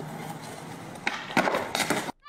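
Skateboard wheels rolling on asphalt, then a quick run of sharp knocks and clatter from about a second in as the rider falls and the board skids away.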